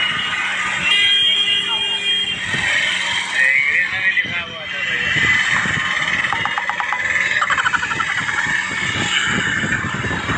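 Street traffic heard from an open e-rickshaw riding through town, with voices around it. About a second in, a held tone sounds for roughly a second and a half, like a vehicle horn.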